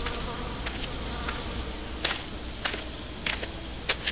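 Insects buzzing and chirring in a steady high drone, with sharp footsteps on a dirt road about once every half-second to second.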